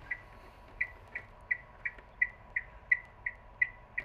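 Ticking sound effect: short, high, evenly spaced ticks, about three a second, starting about a second in over a faint steady tone.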